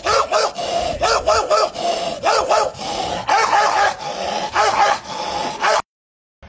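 A man imitating a dog's barking with his voice, one hand cupped to his mouth. The yips come in quick bursts of three or four, roughly once a second, and cut off abruptly near the end.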